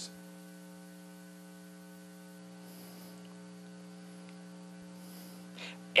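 Faint, steady electrical mains hum: a constant low buzz with a ladder of higher overtones, unchanging throughout.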